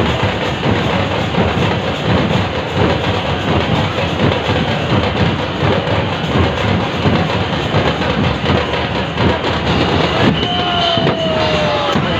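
Dense festival crowd noise with fast, continuous drumming and clanging percussion. A falling tone sounds near the end.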